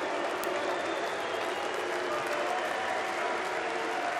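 Arena darts crowd applauding steadily, acknowledging a nine-dart finish attempt that missed on the final dart.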